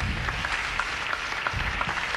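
Live audience applauding, with two low swells underneath, one at the start and one about a second and a half in.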